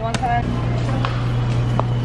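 A steady low hum with a brief spoken word at the start, and a couple of light clicks about one second and nearly two seconds in.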